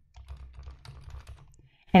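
Typing on a computer keyboard: a quick run of faint keystrokes that stops shortly before the end.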